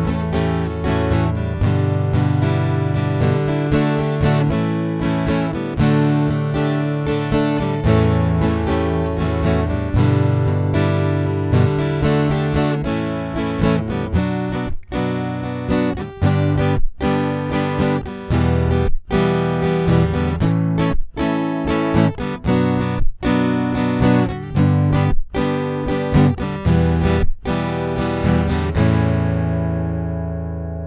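Electro-acoustic guitar strummed in chords, heard through its built-in piezo pickup, with the soundhole open and no O-Port fitted. From about halfway the strumming breaks off in short sudden stops about every two seconds, and near the end a last chord is left ringing.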